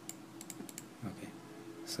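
Computer keyboard being typed on, with a quick run of keystrokes in the first second and another keystroke near the end.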